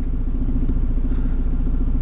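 Steady low rumble of a car engine idling, heard from inside the cabin, with a fine even pulse to it.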